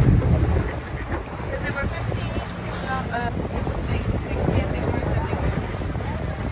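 A small open tour boat under way: a steady low rumble of wind buffeting the microphone over the boat's motor, louder for the first half-second and then even. Brief snatches of voices come through about two and three seconds in.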